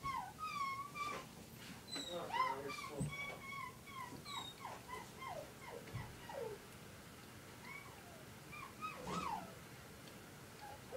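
An animal's high whining cries: a run of short, gliding whimpering calls, busiest in the first half and again just after nine seconds.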